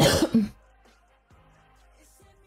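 A woman coughs: two loud, rough bursts in quick succession within the first half second, with faint pop music underneath.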